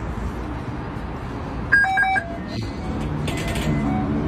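Metro turnstile card reader beeping three times in quick succession as a transit card is held against it, over steady station background noise.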